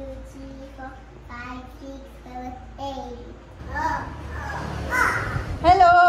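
A toddler's voice in sing-song vocalising, holding and stepping between notes, then a louder, high-pitched call near the end.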